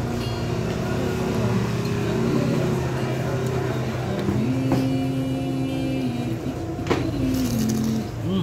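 A motor vehicle's engine running close by, holding a steady note, rising in pitch about four seconds in and falling back near the end. A sharp click sounds about seven seconds in.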